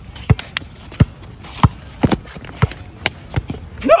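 A basketball dribbled on an outdoor asphalt court, about six hard bounces at an uneven pace, with running footsteps.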